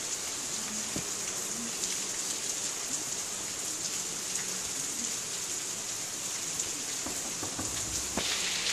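Steady rain falling: an even hiss.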